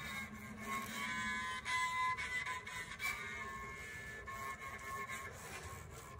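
Bowed cello playing an instrumental passage of sustained notes that change about once a second.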